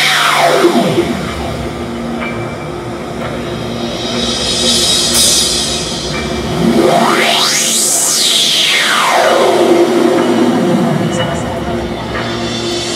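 Live drum-kit performance over an electronic backing track, with a sweeping synth effect that glides up in pitch and back down, easing off about a second in and rising again to peak about 8 seconds in before falling away. A hissing rise cuts off suddenly about 5 seconds in.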